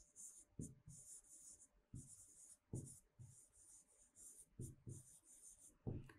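Faint scratching and tapping of a pen writing on a tablet screen, in a string of short strokes.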